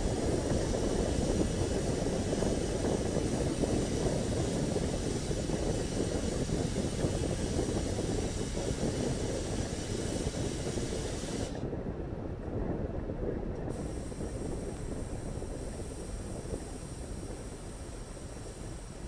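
Distant low rumble of a Falcon 9 first stage's nine Merlin engines in flight, steady and slowly fading.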